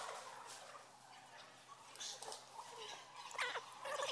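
A thin stream poured from a jug into a plastic bucket hanging from a spaghetti bridge, adding test load, faint and uneven, with a short vocal sound from onlookers near the end.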